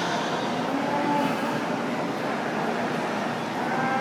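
Steady background din of a livestock show arena: an even, constant noise with faint distant voices or animal calls in it.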